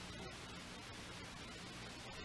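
Faint steady hiss with a low hum underneath: the background noise of a speech recording during a pause.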